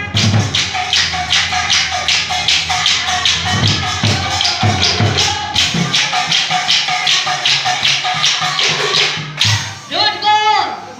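Nagara naam percussion played without singing: a fast, steady beat of about four sharp strokes a second over occasional deep nagara drum strokes. A voice comes back in at the very end.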